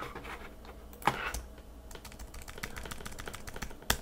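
Rapid keystrokes on a computer keyboard, deleting a line of code, with a sharper, louder click near the end.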